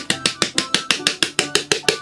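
Rapid hand taps on the base of an upside-down plastic mycelium breeding bottle, about eight a second, knocking the crumbly spent substrate loose to empty it. Background music plays underneath.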